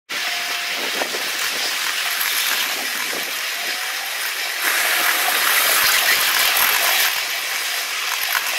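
A ride-on miniature train's cars rolling over the track, the wheel and rail noise sped up to eight times normal speed into a continuous rushing hiss. It grows louder a little past halfway.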